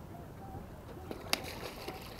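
A single sharp click a little after halfway, with a couple of fainter ticks around it, over a steady low outdoor background.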